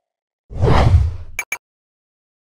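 Whoosh sound effect of a logo animation, swelling and fading over about a second, followed by two quick sharp clicks.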